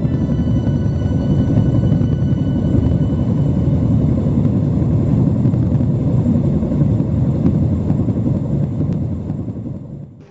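A loud, steady low rumble that fades away near the end.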